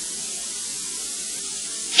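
Steady hiss of an old analogue video recording during a pause in speech, with no other sound.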